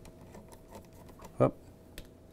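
Faint clicks and rubbing as a corrugated plastic drain hose is pushed and worked onto the drain pump's outlet tubing of an under-counter ice maker.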